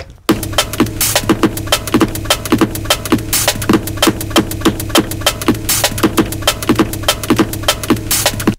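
E-mu SP-1200 sampler playing a sampled drum break in tune mode, a fader setting the pitch of the break. The drum hits come in a quick, even rhythm over a steady low tone.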